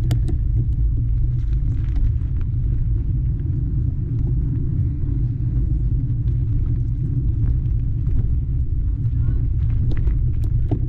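Mountain bike rolling along a dirt singletrack with wind on the camera microphone: a steady low rumble with scattered small clicks and ticks from the tyres and bike.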